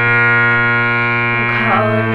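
Harmonium holding a steady chord over a low drone. A girl's singing voice comes in near the end.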